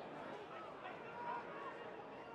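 Low stadium crowd murmur at a football match, with a few faint distant voices calling out.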